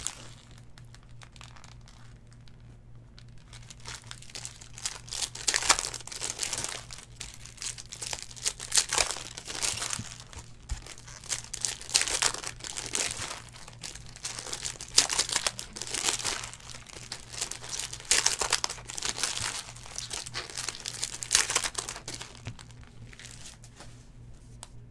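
Foil trading-card pack wrappers crinkling in the hands in irregular bursts as packs are opened.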